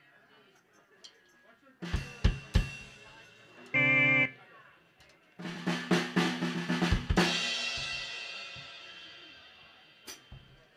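A rock band warming up on stage: three separate drum hits about two seconds in, a short loud held chord near the middle, then a brief burst of full drum kit and electric guitars that ends on a crash and a chord ringing out and slowly fading.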